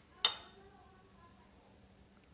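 A single sharp click of kitchenware knocking together about a quarter second in, dying away quickly, followed by faint handling sounds.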